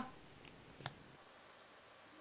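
A single sharp plastic click a little under a second in, from makeup packaging being opened, against faint room tone.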